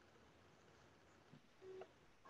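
Near silence: room tone, with a brief faint tone near the end.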